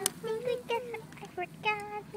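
A child's voice making short, high-pitched wordless sounds in quick bursts. There is a sharp click right at the start.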